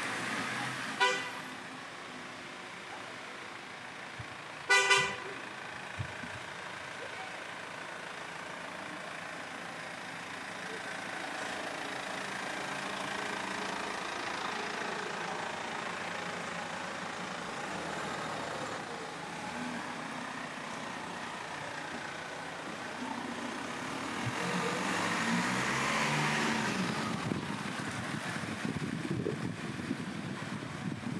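Car horn toots: a short one about a second in, then a louder double toot near five seconds, over steady street traffic. A vehicle passes near the end, its tyres swishing on the wet road.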